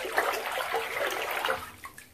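A hand swishing through bathwater in a tub, a few uneven swishes and splashes that die away near the end.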